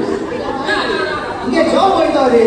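Men speaking through stage microphones: continuous dialogue, with no other sound standing out.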